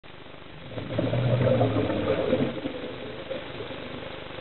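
Scuba diver exhaling through a regulator underwater: a low, buzzing rumble of bubbles starts about a second in and lasts about a second and a half, then dies away to the faint hiss of the water.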